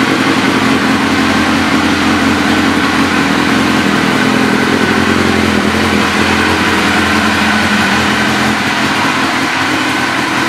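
2002 Suzuki GSX-R1000's inline-four engine idling steadily through an aftermarket slip-on exhaust.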